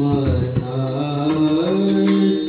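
Devotional kirtan music: a couple of last strokes on a two-headed barrel drum (pakhawaj) in the first half second, then a voice holds a long chanted note that rises in pitch near the end.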